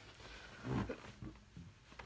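Quiet room with one brief, low vocal sound from a man, like a short grunt or hum, a little under a second in.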